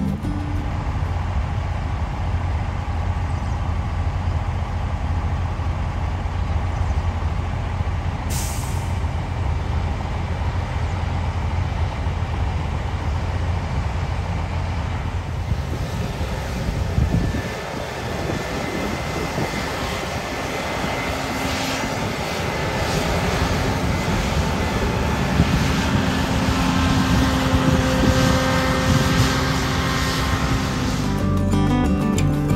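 New Holland combine harvester running: a steady diesel engine drone, with a brief hiss about eight seconds in. From about seventeen seconds the sound shifts to a steadier machine whine as the combine cuts wheat.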